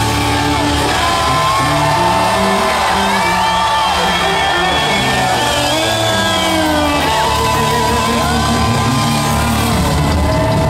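Loud live rock music from a full band: acoustic guitars, bass and drums, with long held notes that bend in pitch, and shouts and whoops from the crowd.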